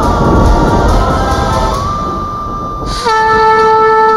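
Dramatic background score: a deep rumbling swell under held tones, then a loud, sustained horn-like note that enters suddenly about three seconds in.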